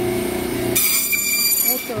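Electric band saw motor running with a steady hum. For about a second in the middle, a higher-pitched whine joins it as the blade cuts through a rohu fish.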